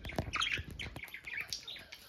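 Budgerigar chirping and chattering right at the microphone in short, high notes, with a few close taps and knocks in the first second.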